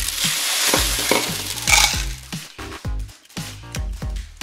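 Plastic beads pouring out of a tipped plastic cup, a rattling cascade onto a tabletop lasting about two seconds.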